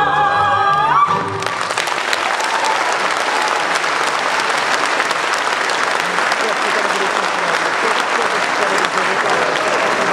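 Two women's voices and a folk band end a Hutsul song on a held note that slides up about a second in, then audience applause takes over, steady and dense.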